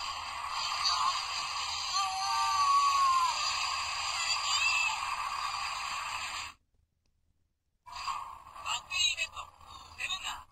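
Voice and sound effects played back through the Sevenger figure's small built-in speaker, thin and tinny with nothing in the bass, with a few falling pitch glides. The sound cuts off abruptly about six and a half seconds in, and after a second of silence more choppy voice-like sounds start.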